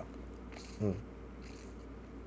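A pause in speech: steady low room hum, broken once about a second in by a man's short hummed "mm".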